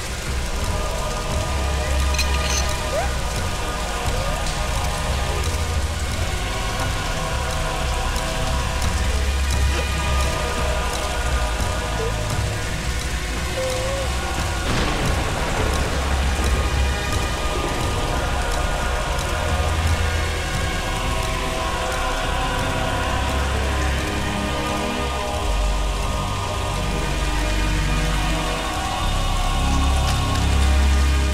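Heavy rain pouring steadily onto a paved terrace, under a film score with deep low swells every few seconds.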